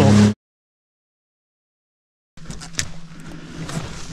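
Sea-Doo Explorer Pro jet ski engine running steadily, cut off suddenly after a fraction of a second by an edit to complete silence. About two seconds later faint outdoor background returns, with a few light clicks and knocks, the ski now stopped in shallow water.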